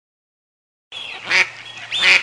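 A duck quacking, starting after about a second of silence, with two loud quacks, the second at the very end.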